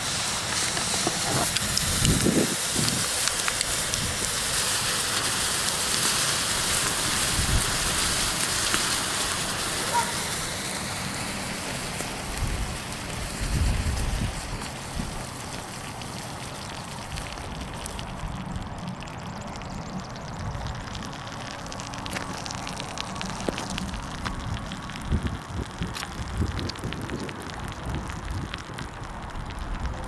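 Nickel(III) oxide thermite burning in a clay flower pot with a steady hiss and crackle and a few low thumps. It dies down about 18 seconds in to faint crackles and ticks as the molten charge cools.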